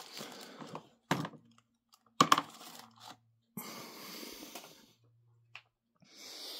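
Handling noise: paper rustling as sheets are moved, with a few short sharp knocks of objects being shifted and set down.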